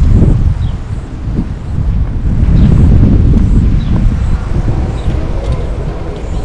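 Wind buffeting the microphone: a loud, uneven low rumble that swells and eases.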